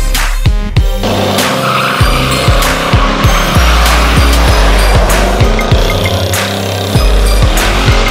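Car tires squealing in a burnout, starting about a second in and running on, over hip hop music with a heavy bass and drum beat.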